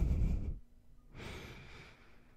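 Close-miked nasal breathing into a microphone: a loud breath with a blowing rumble on the mic ends about half a second in, followed about a second in by a softer, shorter breath.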